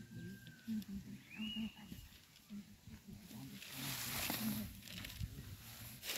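Faint murmur of several people's voices from a seated group, with a short high chirp about a second and a half in and a rush of noise around four to five seconds in.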